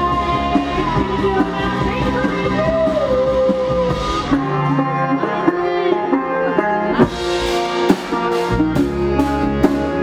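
Live band playing a song with electric guitar and drums while a woman sings. The bass and drums thin out about four seconds in, and a steady beat of sharp strokes comes back near seven seconds.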